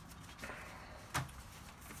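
Faint handling of a soft, unpadded fabric carry bag as it is opened, with one sharp click a little past a second in.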